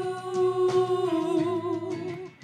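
A women's gospel praise team singing one long held note, over a steady low musical backing.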